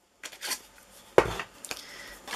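Light handling of a large hand-held paper craft punch and the punched cardstock, with one sharp clack a little over a second in as the punch is set down.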